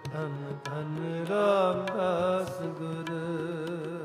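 Shabad kirtan played on harmonium and tabla: the harmonium holds steady sustained notes while the tabla strikes a regular beat. A male voice sings a drawn-out phrase with wavering pitch, loudest in the middle.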